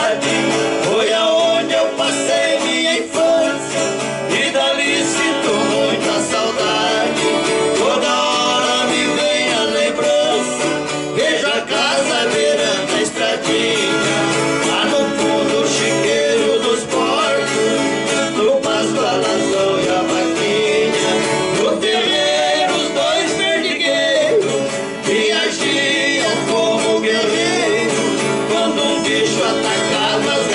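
Two men singing a caipira song together, accompanied by a viola caipira and an acoustic guitar strummed steadily.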